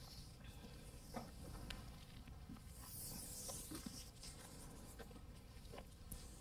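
Faint rustling and a few soft ticks as a weigh tape is drawn around a horse's girth and pressed against its coat.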